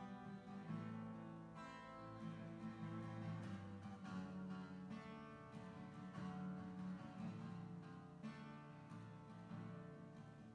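Acoustic guitar played solo, chords strummed and left to ring, with a fresh strum every second or two.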